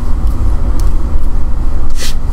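A steady low rumble on the microphone channel, with nothing higher-pitched standing out above it.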